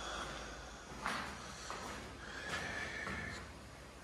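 A person breathing and sniffing close to the microphone: a few short breathy puffs over a low steady hiss.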